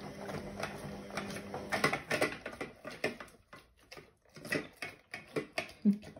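XL bully dog eating from a stainless steel bowl in a raised metal stand: irregular clicks and clatters of chewing and licking and of the bowl knocking in its frame. A low steady hum stops about two seconds in.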